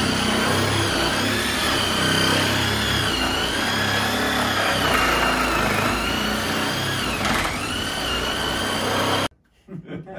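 Cordless power tool cutting through a four-inch bulkhead fitting on a tank stand. It runs steadily with a whine that wavers in pitch as the blade bites, then cuts off suddenly near the end.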